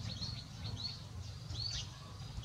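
Small birds chirping in short, high, quickly repeated calls, over a low steady rumble.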